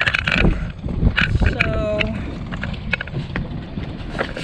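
Wind buffeting the microphone as a ragged low rumble, with a few sharp knocks in the first second and a half and a brief snatch of a voice around the middle.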